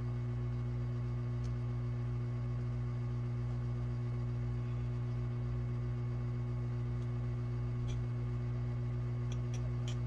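Hot air rework station handpiece blowing steadily: a constant fan hum with a faint hiss of air, with a few faint clicks in the second half. It is heating the solder joints of a replacement laptop DC charge port until the solder melts and the jack drops into place.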